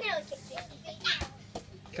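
Children at play with faint short calls and one sharp knock a little over a second in; an adult voice starts again near the end.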